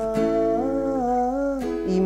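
Acoustic guitar being strummed, with a man singing a long held note over it. The sung pitch steps up about halfway through, and fresh strums fall near the start and again near the end.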